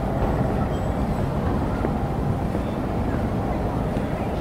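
Water rushing steadily through the canal lock: an even, low roar with no breaks.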